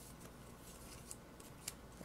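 A few faint, short clicks and ticks of stiff paper scratch-off tickets being handled and stacked, over quiet room tone.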